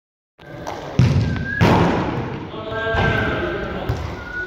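A football thudding on artificial turf: a few sharp thumps, the loudest about a second in and another just after, with voices between them.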